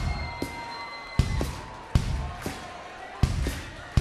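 A concert audience clapping along to a slow, sparse drum beat, sharp hits landing roughly every half to three-quarters of a second. A held guitar tone rings faintly in the first second or so.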